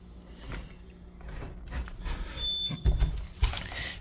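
A sliding patio door being moved, with small clicks and knocks and two low thumps about three seconds in.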